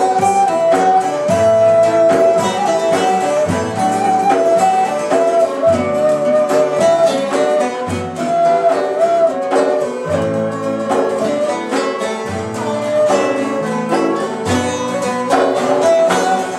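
Turkish folk ensemble playing an instrumental passage: a ney carries a sustained melody over plucked saz (bağlama), with a low bendir beat recurring about every two seconds.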